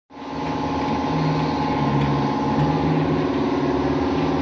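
Air-powered orbital sander running on a painted trailer panel, over the steady hum of the air compressor that feeds it; the sound holds evenly after fading in at the start.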